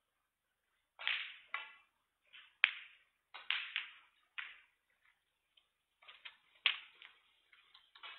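Snooker balls being played: sharp clicks of the cue tip on the cue ball and of ball on ball, with softer knocks of balls against the cushions. The sharpest clicks come about two and a half seconds in and again near the end.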